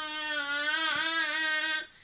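A baby's long, loud vocal shout held on one fairly steady pitch, cutting off shortly before the end.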